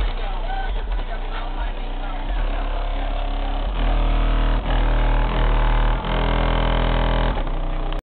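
Car stereo playing bass-heavy music with a vocal, driven by a 12-inch Re Audio MX subwoofer in a 3.3-cubic-foot box ported to 36 Hz, heard from outside the car. Deep bass notes dominate and get louder about four seconds in.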